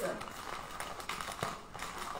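Rustling and crinkling of a bouquet's wrapping and ribbon bow being handled and tied tight, with a few faint ticks.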